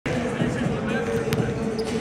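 Basketballs bouncing on a hardwood practice-gym floor, with irregular overlapping thumps and a sharp knock about a second and a half in, over voices and a steady hum in the large hall.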